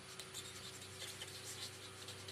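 Blue fine-tip marker pen writing on paper: a run of short, faint scratches as the letters of a word are stroked out.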